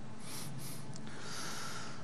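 A man's breaths close to a microphone: two short intakes, then a longer, deeper inhale, drawn just before a phrase of Quran recitation.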